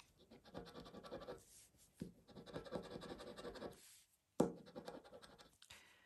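A round scratcher disc rubbing the coating off a Cashword scratch card's letter panel in quick, short strokes, in two runs. A single sharp tap comes about four and a half seconds in, followed by a few lighter scrapes.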